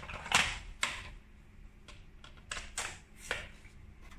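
Several sharp plastic clicks and knocks, irregularly spaced, as mains plugs are handled and pushed into a power strip.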